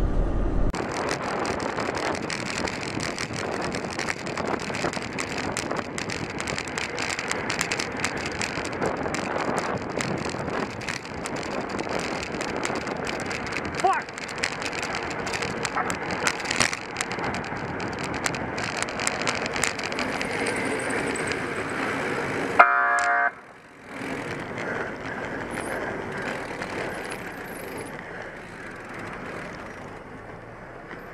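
Wind and traffic noise heard through a camera mounted on a bicycle riding in city traffic. Near the end a short horn blast sounds, followed by a brief drop in level.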